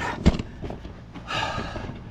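A man breathing out heavily, like a sigh, about halfway through, after a single sharp knock of a handheld camera being handled just after the start.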